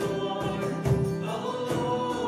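A worship song sung by a man and a woman to a strummed acoustic guitar, with strums landing at a regular beat.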